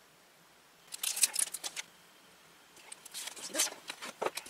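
Crisp plastic rustling and clicking as a packet of clear photopolymer stamps is handled and a clear stamp is taken off its plastic backing sheet. The sounds come in two short bouts, one about a second in and one near the end.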